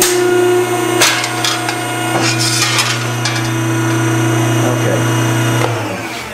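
Hydraulic ironworker running with a steady hum, with a few sharp metallic clanks as the punch station strokes through a steel sheet. The sheet lifts with the punch because the stripper is set too high.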